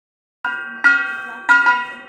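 A small hand-held brass gong struck with a wooden stick: three ringing strokes, the first about half a second in, each leaving several clear metallic tones that fade before the next strike.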